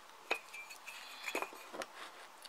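Light metallic clicks of a steel ruler being moved on a wooden tabletop and pushed against a knife: one sharp click about a third of a second in, then a few fainter ticks near the end.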